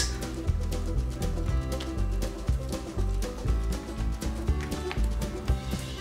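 Instrumental background music with a steady beat and changing bass notes, the video's credited waltz track.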